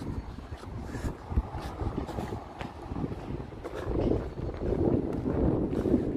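Outdoor street noise with wind buffeting the microphone during a walk on an unpaved road; a low rumble grows louder over the last couple of seconds.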